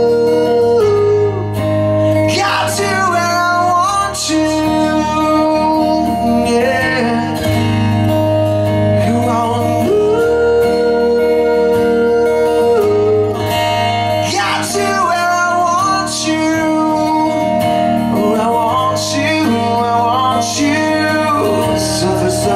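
A man singing, with sliding phrases and a few long held notes, over a strummed acoustic guitar.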